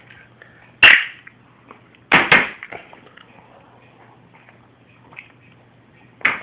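Two sharp knocks from hard objects being handled. The first, about a second in, is the loudest; the second comes about a second later. A few faint clicks follow over a low steady hum.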